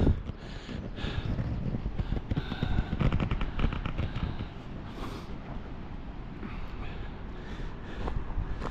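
Wind buffeting the microphone, an uneven low rumble, with a short run of light clicks about three seconds in.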